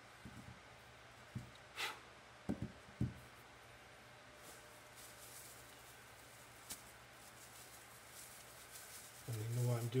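A few soft knocks as a stretched canvas is set down on a table, then faint crinkling of a clear plastic bag being handled.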